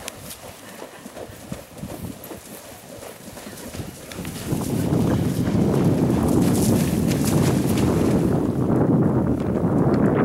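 Horse's hooves splashing through a shallow water jump and striking the ground as it canters out. About four and a half seconds in, a much louder low rushing noise takes over.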